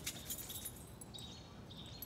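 Quiet outdoor background with a few faint, high chirps of distant birds.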